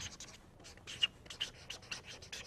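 Hand writing on a board: a run of short, scratchy strokes, irregular in rhythm.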